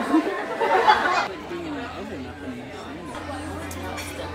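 Diners' voices chattering in a restaurant, louder for about the first second, then a quieter background murmur over a steady low hum.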